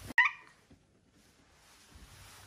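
A domestic cat giving one short, high-pitched meow near the start.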